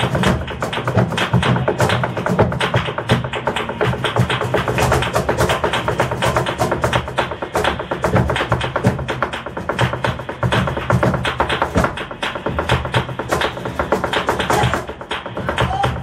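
Flamenco zapateado: rapid, dense heel-and-toe strikes of a dancer's heeled shoes on the floor, over live flamenco music.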